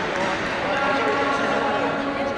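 Unclear voices calling out in a large sports hall, with dull thuds of feet on a taekwondo mat during sparring.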